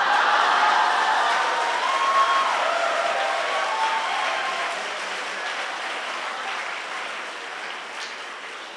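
Congregation applauding in a large hall, with a few voices calling out in the first few seconds; the clapping dies away gradually.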